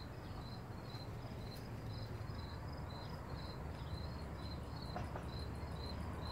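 Crickets chirping steadily, about two to three chirps a second, over a low background rumble.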